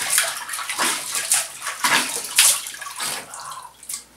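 Water splashing as cupped hands scoop it from a plastic tub onto a face and let it stream back in, in repeated irregular splashes that thin out near the end, with one last sharp splash.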